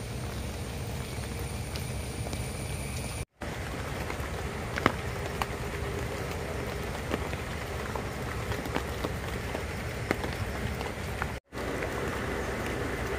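Heavy rain falling steadily on a flooded river and the leaves around it: a dense, even hiss with scattered drop ticks. It breaks off for a split second twice, where clips are joined.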